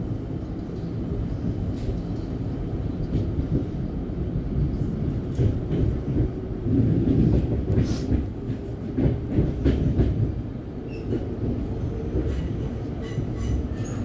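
Melbourne suburban electric train running along the track, heard from inside the carriage: a steady rumble of wheels on rail, with clicks over rail joints and points that come thickest from about five to ten seconds in.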